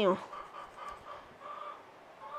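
Chickens clucking faintly, a few short calls spread over two seconds.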